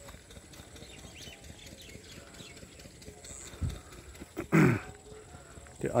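Quiet open-air ambience with faint high bird chirps, then a low thump and, about four and a half seconds in, one short loud vocal sound that falls in pitch.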